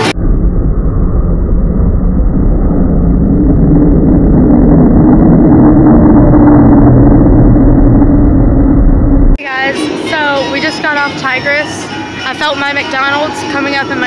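Loud, even rumble and wind noise on a phone microphone during a roller coaster ride, for about nine seconds, then cut off abruptly; music with singing follows.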